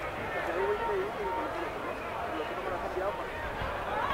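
Indistinct voices of footballers and onlookers calling out across the pitch, too far off to make out words, over a steady outdoor background.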